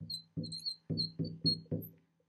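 A marker writing on a glass lightboard: brief high squeaks as the tip drags across the glass, with a soft low thud at each of about five strokes.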